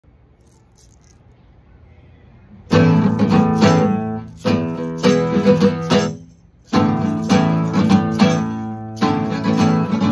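Alhambra nylon-string classical guitar strummed in chords, starting about three seconds in, with a brief pause just after six seconds before the strumming resumes.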